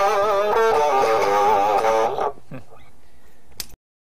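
Electric guitar with a small speaker built into its body, played unplugged: a lead line of sustained notes with wavering vibrato that stops about two and a half seconds in. A faint tail follows, then a short click near the end.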